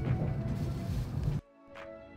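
Low, steady rumble of a Shinkansen bullet train's passenger cabin at speed, cut off suddenly about one and a half seconds in by background music.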